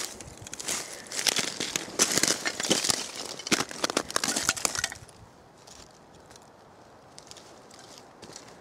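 Loose shale plates crunching and clinking against each other in a dense run of sharp clicks and scrapes for about five seconds, then stopping.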